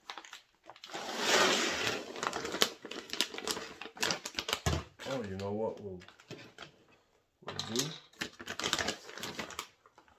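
Dry pinto beans pouring and rattling into a plastic bag, with the bag crinkling: a rush of pouring about a second in, then scattered clicks of beans shifting.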